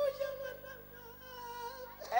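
A woman's voice holding one long moaning note into a microphone, sinking slowly in pitch.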